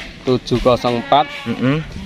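A goat bleating over a man's speech.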